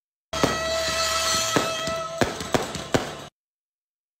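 Firecrackers going off in a quick irregular series of about five sharp bangs over steady party music; the sound starts and cuts off suddenly.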